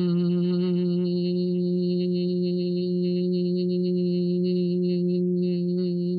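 A woman humming one long, steady note on the exhale, the 'humming bee' breath (bhramari pranayama), held at an even pitch throughout.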